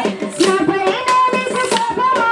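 Kolatam sticks clacking in a quick, even rhythm, about four strikes a second, under a sung folk melody.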